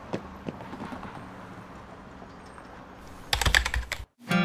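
Computer keyboard typing in a quick, dense burst of keystrokes near the end, after a couple of faint clicks at the start.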